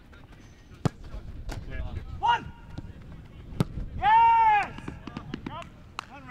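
A football on a training pitch struck with sharp thuds of kicks and catches, about a second in and again past three and a half seconds, with shouted calls between them. A loud, held shout just after four seconds is the loudest sound.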